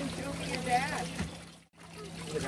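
Water trickling and running through a wooden gem-mining sluice flume as children sift sand in screen boxes. The sound drops away briefly just before the end.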